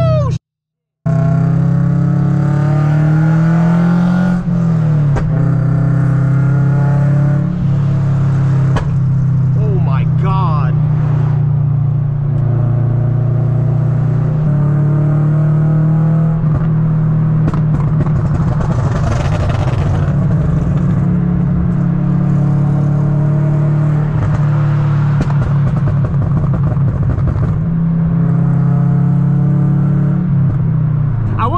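Exhaust drone of a 2013 Scion FR-S with an aftermarket single-exit exhaust, heard inside the cabin while cruising on the highway. It is a loud, steady low drone that rises a little and then falls away about four seconds in, with a short cut to silence just before one second in.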